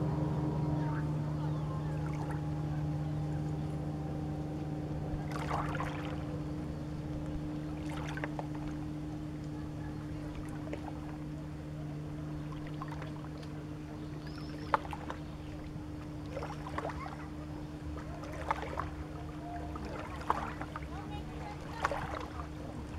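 A distant motorboat engine hums steadily and low, while a higher whine falls in pitch and fades over the first few seconds as the boat moves away. From about five seconds in, the boat's wake laps and splashes at the water's edge in short, irregular slaps.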